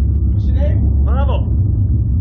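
A steady, loud low rumble throughout, with a couple of short bits of voice about halfway through.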